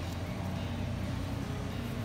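Steady low background rumble with no distinct knocks or strikes.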